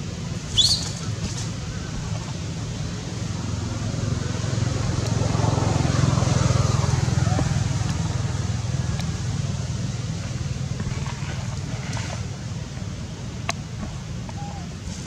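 Outdoor background with a steady low rumble that swells in the middle and fades again, like a vehicle going by. A brief high-pitched squeak near the start is the loudest sound.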